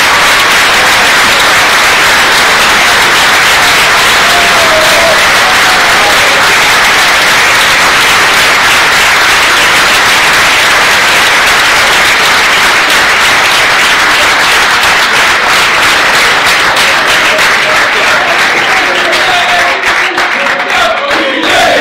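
A crowd applauding loudly and steadily, with a few voices rising through the clapping near the end.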